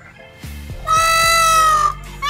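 A peacock (Indian peafowl) gives one loud, drawn-out call about a second in, lasting about a second at a steady, slightly falling pitch. Pop music plays quietly behind it.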